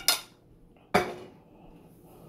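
Kitchenware clinking: a couple of quick clicks at the start, then one sharp clink about a second in that rings briefly.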